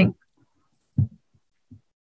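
A woman's voice finishing a word, then two soft, low thumps, one about a second in and one near the end.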